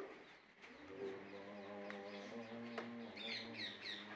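A steady low hum with several overtones sets in about a second in. Small birds give a quick run of chirps near the end.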